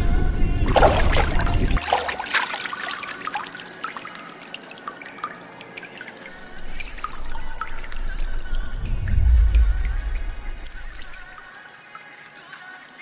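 Water splashing and trickling, heaviest in the first few seconds, over background music. A deep low rumble in the music cuts out about two seconds in and swells again in the second half.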